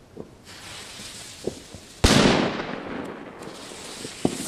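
A firecracker going off with one sharp, loud bang about halfway through, its echo trailing away over about a second. A hiss leads up to the bang, and faint pops of other firecrackers sound before it.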